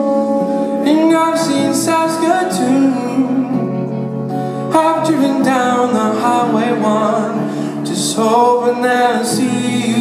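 Male voice singing live with an acoustic guitar accompaniment, in phrases broken by short pauses.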